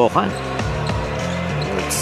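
Basketball game broadcast sound: arena ambience with music playing low and steady underneath, and a short hiss near the end.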